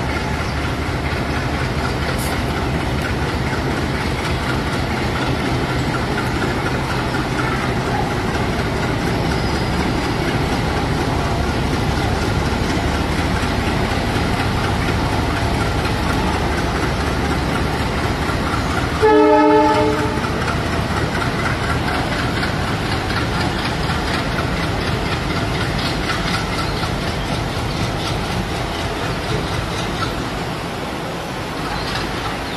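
WDM3A diesel locomotive's ALCO 16-cylinder engine running steadily as it hauls a passenger train out, with a locomotive horn blast of about a second two-thirds of the way through.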